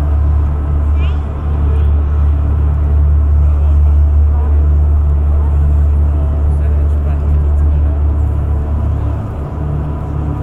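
A loud, steady deep rumbling drone with a few fainter steady tones above it.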